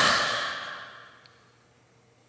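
A man's long, breathy sigh close to the microphone: loud at once, then fading away over about a second.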